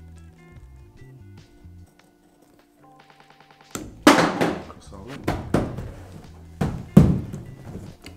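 Hand snips cutting through rubber U-channel window edge trim: a series of about six sharp cuts starting about four seconds in, over light background music.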